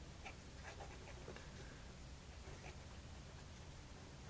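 Faint scratching of a Lamy 2000 fountain pen's gold medium nib across paper in short strokes as words are handwritten: the light feedback the writer calls the pen singing. A low steady hum runs underneath.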